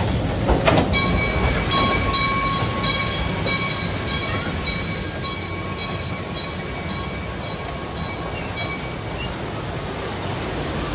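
Amusement-park mine train rolling along its track with a steady low rumble. From about a second in, a bell rings with regular strikes about every two-thirds of a second and gradually fades out near the end.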